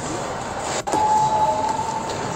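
Street noise with passing traffic. After a brief dropout just under a second in, a steady high whine holds for about a second.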